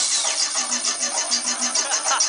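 Recorded track played over a club sound system: a fast, even pulsing passage of about seven beats a second, with no singing, between sung parts.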